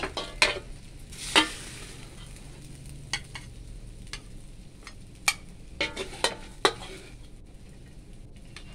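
Long-handled metal spatula scraping and knocking against a steel wok and a small bowl as fried rice is scooped up and packed. About nine sharp, irregular clicks ride over a faint, steady sizzle of rice in the wok.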